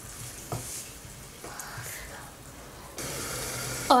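Thick masala gravy with potatoes sizzling in a kadai while a wooden spatula stirs it, with a light knock of the spatula against the pan. The sizzle gets louder about three seconds in.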